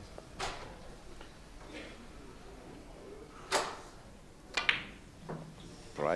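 Billiard balls on a billiards table: a faint click, then the cue tip striking the cue ball about three and a half seconds in, and a sharp ball-on-ball click about a second later.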